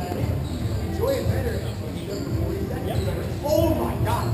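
Ball hockey play in a large arena: a hard ball bouncing and stick hits knocking on the plastic sport-court floor, with players' voices calling out across the rink.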